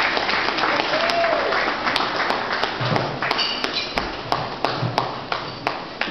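Audience applauding, dense at first and thinning to scattered separate claps near the end.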